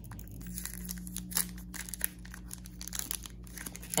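Foil wrapper of a Pokémon Darkness Ablaze booster pack being torn open and crinkled by hand: a run of small crackles, with one louder crackle about a second and a half in. The pack tears open easily.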